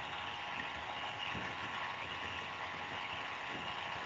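Steady low background noise from an open call microphone: an even hiss with a faint hum, and no speech.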